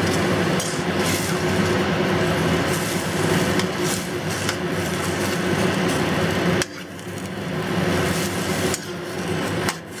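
Chrysanthemum greens sizzling in a hot wok of oil and sauce while being tossed with metal tongs, with clicks and scrapes of the tongs against the pan over a steady hum. The level drops sharply about two-thirds of the way through.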